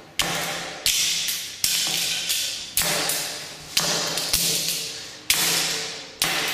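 Sledgehammer striking Koss Porta Pro headphones on a concrete floor: seven hard blows in quick succession, each with a short echo.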